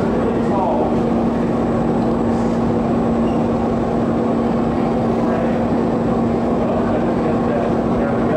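Steady noise of a glassblowing hot shop's gas-fired glory hole and exhaust ventilation running, with a constant low hum.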